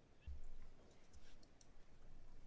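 Quiet council-chamber room tone with a soft low thump just after the start and a few faint clicks about halfway through.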